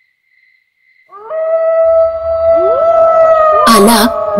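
Dog howling: one long, drawn-out howl like a jackal's, sliding up at the start about a second in and then held steady. A sharp crackle comes just before the end.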